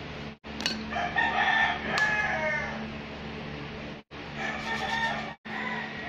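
A long, pitched animal call starting about a second in and lasting about two seconds, then shorter calls, over a steady low hum. The sound drops out briefly three times.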